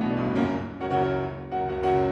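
Grand piano playing a solo passage of the song's accompaniment between the singer's phrases: three loud chords, each ringing on and fading.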